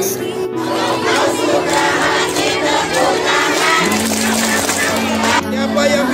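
A large crowd of many voices calling out at once, starting about half a second in, over background music with long held notes.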